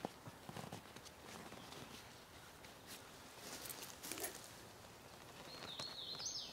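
Faint rustling and a few soft clicks of hands handling tent fabric and pulling a corner buckle strap tight. A bird chirps near the end.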